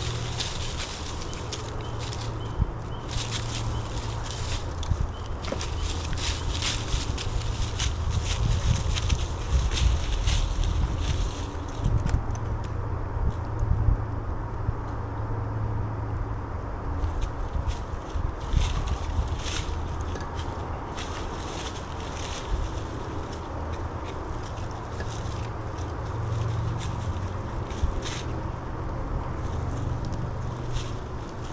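Tree-climbing gear in use: boots stepping onto metal climbing sticks and rope aiders, giving scattered clicks, knocks and scrapes against the trunk, over a steady low rumble. The clicks come thickest in the first part and again a little past the middle.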